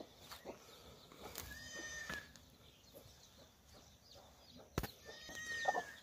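Faint goat bleating, two short calls, the first about a second and a half in and the second near the end, with a sharp click just before the second.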